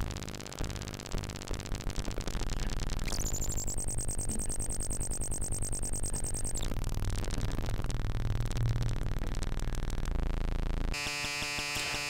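Jolin Lab Tabør eurorack module, four oscillators cross-modulating one another, playing its raw unmodulated sound: a rapidly pulsing electronic buzz whose character shifts as its knobs are turned through its 'weird spots'. A high steady whistle joins about three seconds in and drops out around six and a half seconds.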